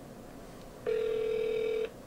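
Ringback tone of an outgoing call heard through a smartphone's speaker: one steady ring about a second long, starting just under a second in.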